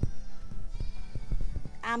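A goat bleating, with soft knocks and rustles of a handheld phone being moved around.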